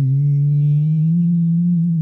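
A man's voice humming one long buzzing note in imitation of a bee, its pitch rising slightly.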